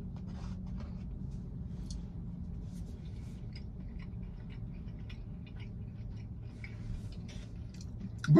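A person chewing soft cookie, with faint scattered small clicks and ticks from the mouth and the fork, over a low steady hum.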